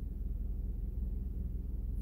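Steady low hum inside a car's cabin from the idling or slow-moving car, with no other distinct events.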